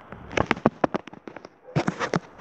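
Fireworks going off: a rapid run of sharp cracks and pops from about a third of a second in, then a second cluster near the end.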